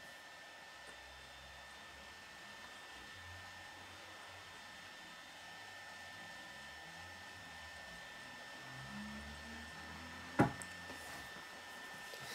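Faint room tone: a steady soft hiss with a thin high whine, and one sharp click about ten seconds in.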